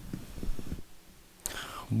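A quiet pause on a meeting-room microphone, with faint low murmurs and then a breath, before a man begins speaking at the very end.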